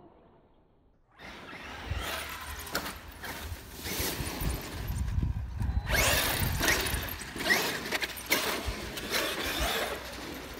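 Electric RC monster truck (Traxxas X-Maxx 8S) driving hard over a dirt track and tumbling on a mound. It starts suddenly about a second in as a loud, uneven rush with a deep rumble and many sharp knocks of the truck striking the dirt.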